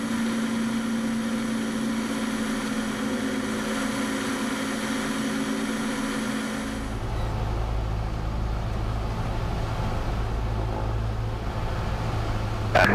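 Cessna 172's piston engine and propeller droning steadily in flight. About seven seconds in, the sound switches abruptly to a deeper, lower drone.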